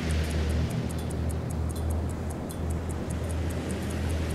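Background film music: a low sustained drone under faint, evenly spaced ticking.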